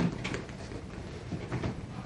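Library reading-room ambience: a steady low hum with scattered light clicks and knocks from people studying, the loudest a dull thump at the very start.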